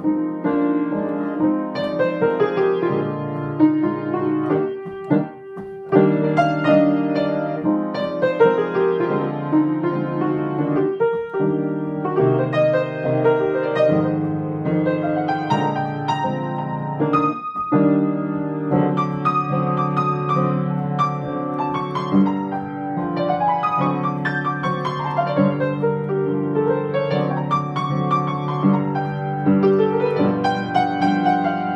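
Solo piano improvisation: a slow, unhurried, not-too-complicated tune of chords and a melody, with brief pauses between phrases at about five seconds and again at about seventeen seconds.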